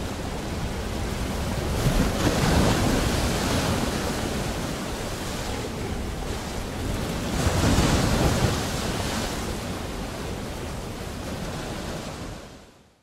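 Ocean surf: waves breaking and washing over one another in a steady roar, swelling louder about two seconds in and again around eight seconds.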